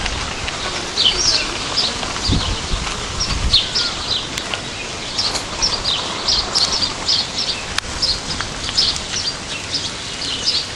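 Small birds chirping: many short, high calls repeating a few times a second, over a low rumble in the first few seconds.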